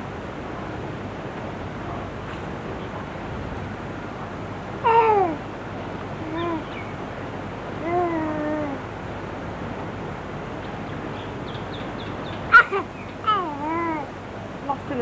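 A young baby cooing and babbling: a few short wordless sounds with gliding, mostly falling pitch, one about five seconds in, two more a couple of seconds later, and a quick cluster near the end, over a steady background hiss.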